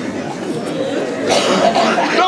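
Murmur of a seated audience chatting, with a single short cough from someone in the crowd about halfway through.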